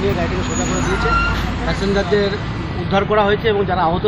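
People's voices talking over a steady low rumble of vehicle or road noise.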